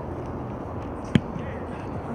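A football punted on an open field: one sharp thump of foot striking ball about a second in, over steady outdoor background noise.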